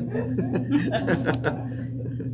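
People chuckling and laughing in short broken bursts, over a steady low hum.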